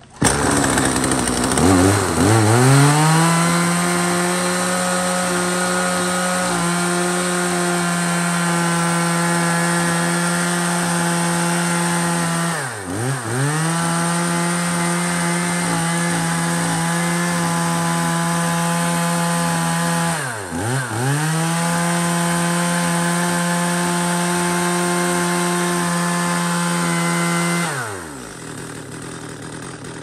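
Hitachi CS40 40 cc two-stroke chainsaw revving up about a second in and held at high revs, its muffler keeping the note from sounding harsh. The revs drop and climb back twice as the throttle is let off and squeezed again. Near the end it falls back to a quiet idle.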